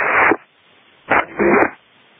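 Air traffic control radio audio: a transmission cuts off just after the start, leaving steady open-channel hiss, broken about a second in by a short garbled burst of about half a second, like a clipped transmission.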